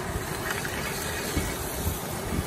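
Fish frying in a cast iron skillet on a propane camp stove: a steady hiss of sizzling and burner, with wind rumbling on the microphone.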